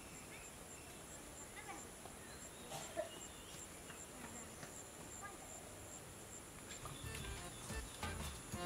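Quiet rural outdoor ambience: a steady high insect drone with an evenly pulsing high chirp, and a brief sound about three seconds in. Music starts to come in near the end.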